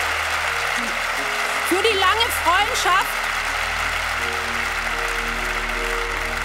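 Large audience applauding steadily, with held background music tones underneath. A short burst of voice comes about two seconds in.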